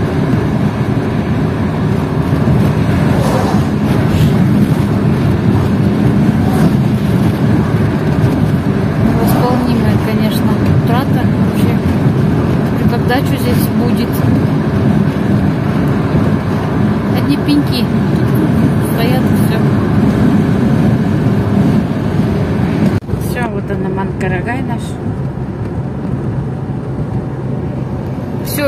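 Steady road noise of a car driving at speed, heard inside the cabin: tyre and engine rumble. Near the end the noise changes abruptly and becomes duller.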